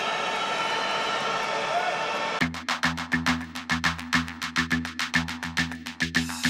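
Arena crowd noise, a steady roar of many voices. About two and a half seconds in it gives way to music with a fast drum beat over a steady bass.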